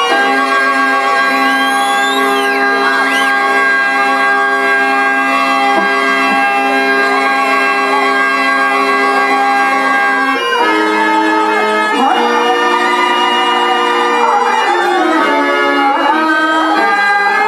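Instrumental music accompanying a stage drama, with long held notes that stay level for about ten seconds, then shift to new notes and shift again near the end.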